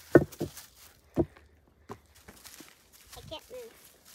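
Child's rubber-soled boots stepping in deep wet mud: four heavy squelching steps in the first two seconds, then quiet apart from a brief voice sound near the end.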